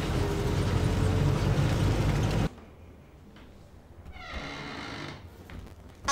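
Steady rumbling running noise of a moving vehicle, heard from inside it, cuts off abruptly about two and a half seconds in. Quiet room tone follows, with a faint, brief creak of a wooden door swinging open near the end.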